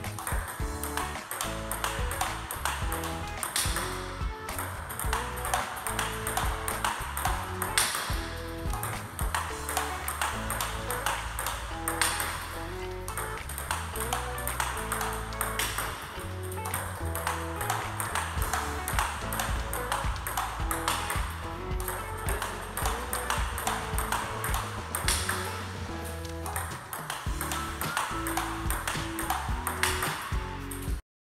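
Background music laid over a table tennis rally, with the sharp clicks of the celluloid ball striking the paddles and bouncing on the table throughout.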